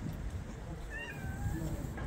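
A cat meowing once, a short, slightly falling call about a second in, over a low background rumble.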